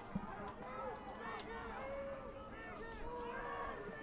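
Faint shouts and calls from lacrosse players and the sideline benches carry across an open field, several voices overlapping, with a few faint clicks.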